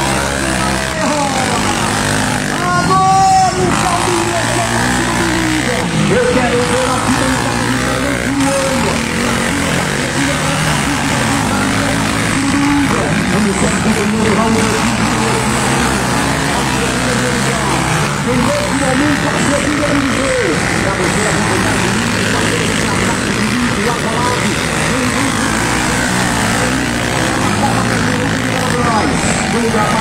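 Trail dirt bike engines revving up and down as the bikes race around a dirt track, their pitch rising and falling, with people's voices mixed in.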